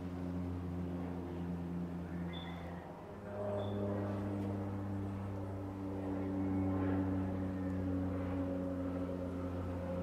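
A steady low machine hum with an even, droning tone that shifts and gets a little louder about three seconds in, with two short high chirps just before and after that shift.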